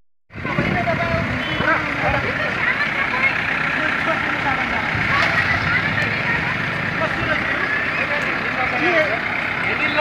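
Diesel engine of an Escorts backhoe loader running under the overlapping talk and calls of a crowd.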